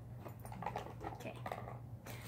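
Faint rustling and light clicks of small items being handled inside a mini backpack, over a steady low hum.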